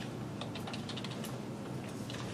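Computer keyboard typing: a run of quick, irregular key clicks over a steady low room hum.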